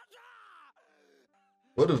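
Speech only: a faint, crying anime character's voice falling in pitch, a short pause, then a man loudly starting to speak near the end.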